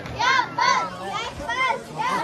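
Procession crowd: high-pitched voices calling out in short, repeated rising-and-falling calls, about two a second, over men's voices talking underneath.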